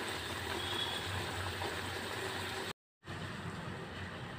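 Gongura leaves and green chillies boiling in water in an aluminium pot, heard as a faint, steady bubbling hiss. About three seconds in, the sound drops out in a brief moment of dead silence, then only faint room noise remains.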